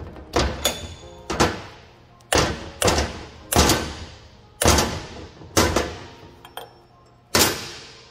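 A wrench being knocked tight on the IPR valve threaded into a DT466 high-pressure oil pump held in a vise: about nine sharp metallic knocks with short ringing tails, roughly a second apart. Background music runs underneath.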